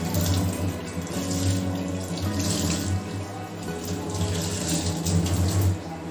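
Tap water running into a stainless steel kitchen sink as a cloth is rinsed and wrung under the stream; the water cuts off near the end. Background music plays under it.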